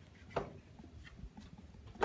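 One dull knock about half a second in, then a few faint taps.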